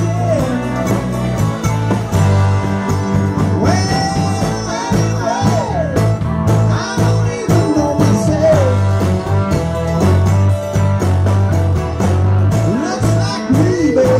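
Live rock band playing: a male lead singer with a mandolin, electric guitar, keyboards and drums over a steady pulsing bass line, the voice coming in with long sliding notes in phrases.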